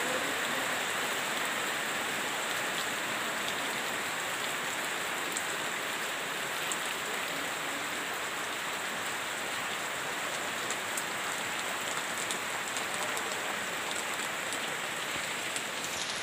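Steady rain falling, with occasional close drops ticking.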